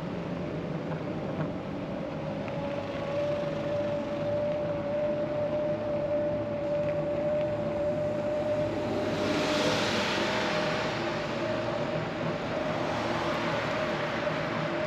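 Road traffic noise from cars along the roadside, with a steady electric-bike assist motor whine that creeps slightly upward in pitch; a vehicle passes close by about two-thirds of the way through.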